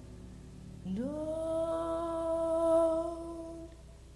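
A woman's jazz vocal slides up into one long held note on the word "don't" about a second in. She holds it straight, without vibrato, and it fades out shortly before the end.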